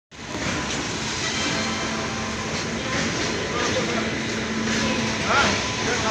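WAG-9HC electric locomotive approaching along the track, a steady rumble with a low electrical hum, with voices in the background.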